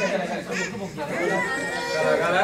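Several people talking at once: chatter among a crowd in a hall.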